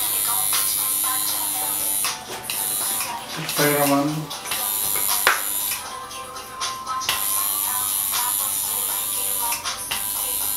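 Electric tattoo machine buzzing in runs of a second or two, stopping and starting as the tattooist works, with music underneath and a short voice about four seconds in.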